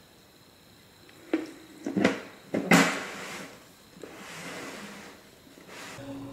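A plastic bucket lid holding a net cup being handled: four knocks in the second and a half after the first second, the loudest followed by about a second of scraping plastic.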